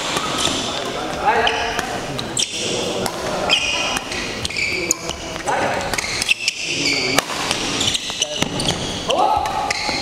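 Doubles badminton rally: rackets strike the shuttlecock with sharp cracks, and court shoes squeak in short, high-pitched chirps on the hall floor as the players lunge and turn.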